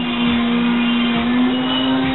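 Restaurant room tone: a steady low hum over an even background noise.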